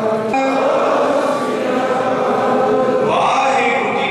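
Many men's voices chanting a prayer together in unison, in long drawn-out notes, with a new phrase rising about three seconds in.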